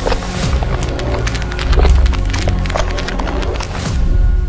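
Intro sting: music with deep bass swells under a rapid, dense run of cracking, splintering sound effects as something shatters.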